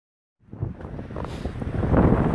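Wind buffeting the microphone over surf washing across wet shoreline rock. It starts after a moment of silence and grows louder.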